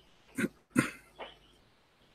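Three short, sharp animal calls within about a second, the middle one loudest.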